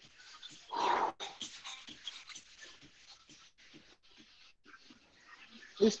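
A man's single heavy breath out about a second in, followed by faint rustles and small clicks: an instructor catching his breath between exercises.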